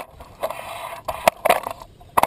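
Handling noise: several sharp knocks and clicks with scraping in between, in quick succession.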